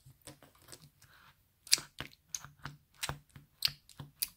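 Sbabam Ice Dream slime mixed with confetti squelching and popping in a bowl as a toy doll is pressed and walked through it: an irregular string of small sharp clicks, a few louder than the rest in the second half.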